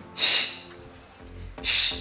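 Two sharp, hissing exhales about a second and a half apart, one with each kettlebell swing, over steady background music.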